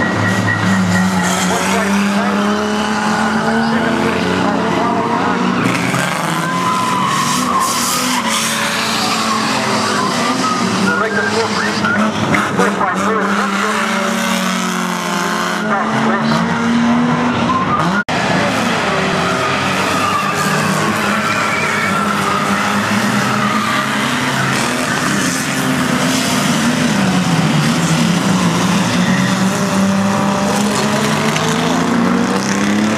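Several banger-racing cars running hard on a tarmac oval, their engines revving up and down, with tyres skidding and squealing as the cars slide and spin.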